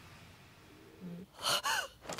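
A short gasp about one and a half seconds in, after a second of quiet room tone.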